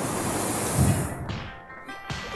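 Hot-air balloon burner firing: a loud rushing hiss that cuts in suddenly and dies away about a second and a half in, over background music whose held notes come in near the end.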